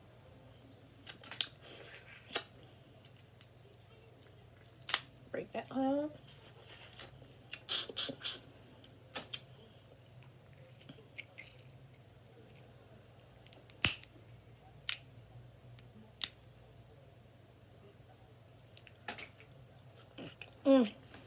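Close-up eating sounds of crab legs: scattered sharp clicks and snaps as the shell sections are handled and the meat is pulled out and sucked from them. About five seconds in there is a short hummed voice sound.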